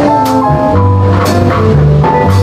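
Jazz band playing a slow ballad in a short instrumental gap between sung lines: held melody notes over a walking bass and drums, with a couple of cymbal strokes.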